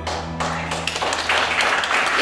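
A small audience starts clapping right at the start as slow music with low held notes fades out about three-quarters of the way through.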